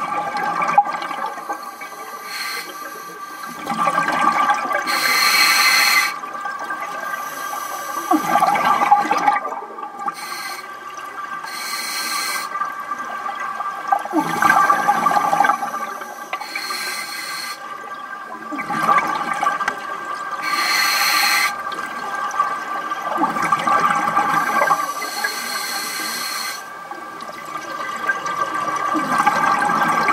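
Scuba diver breathing through a regulator underwater: rushing bursts of exhaled bubbles swell and fade about every five seconds, six times, over a steady faint high hum.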